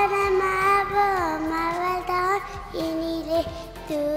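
A young girl singing a slow melody into a handheld microphone, holding long notes that slide from one pitch to the next.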